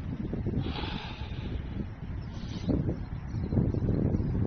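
Wind buffeting a phone's microphone outdoors: an irregular low rumble that grows a little stronger near the end, with a brief hiss about a second in.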